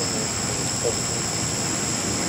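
Small electric multirotor (tricopter) sitting on the ground with its motors spinning at idle, giving off a steady high-pitched whine.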